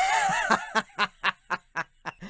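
A person laughing: a wavering first sound, then a quick run of short snickering bursts, about four a second.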